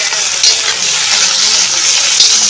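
Meat sizzling and frying hard in a large iron wok over a wood fire, stirred with a metal ladle, with a steady loud hiss and a brief louder scrape about half a second in.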